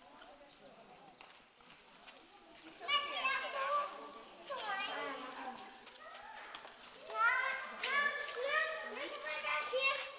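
Children's high-pitched voices calling and shouting in bursts, starting about three seconds in; before that only faint background noise.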